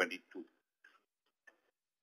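The last word of a speaker's sentence over a conference-call line, then a pause in which a few faint, scattered clicks are heard.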